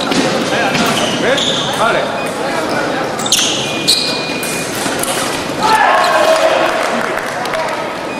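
Foil fencing bout in a large hall: fencers' feet stamping on the piste and blade clicks, with a steady electronic beep from a scoring machine a little past halfway. About six seconds in comes a loud shout as a touch is scored.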